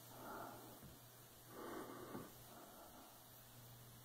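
Near silence, with two faint breaths from a person close to the microphone, one right at the start and another about a second and a half later.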